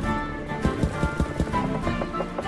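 An online slot machine game's looping music, with a quick run of about five thuds about halfway through as the spinning reels stop one after another.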